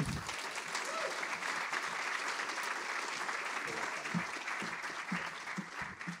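Audience applauding, a steady patter of clapping that thins out near the end.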